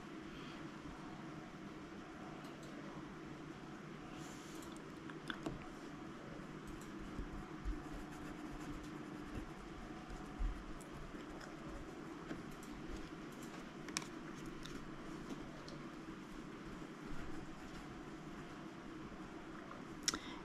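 Quiet room tone with faint, scattered taps and light scratching from a small paintbrush mixing gouache and laying it onto paper.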